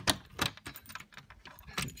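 Keys on a ring hanging from a trailer door's push-button lock jangling as the button is pressed and the latch worked, with sharp clicks, the loudest at the start and another about half a second in.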